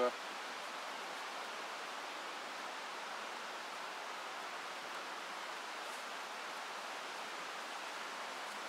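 Steady, even outdoor background hiss with no distinct sounds in it; the button being done up makes no audible sound.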